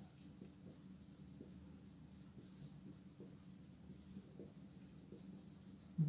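Marker pen writing on a whiteboard: a faint, irregular run of short strokes as words are written out.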